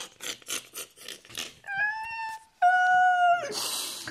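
A man laughing hard: rapid breathy wheezing pulses, about four a second, then two long high-pitched squealing cries, then a sharp hissing gasp for breath near the end.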